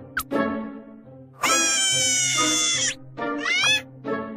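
Cartoon sound effects over light background music: a quick swish, then a loud high-pitched whining cry held for about a second and a half, then a few quick rising whistle-like glides.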